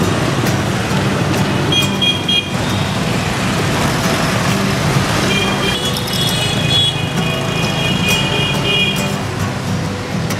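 Steady city street traffic, mainly motorbikes, with music playing underneath.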